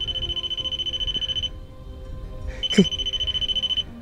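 REM pod proximity alarm sounding a steady high electronic tone, triggered by something near its antenna. It cuts off about one and a half seconds in and sounds again for about a second near the end, with a short falling chirp just before it returns.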